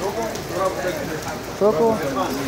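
Steady rainfall, an even hiss, with a voice talking over it twice.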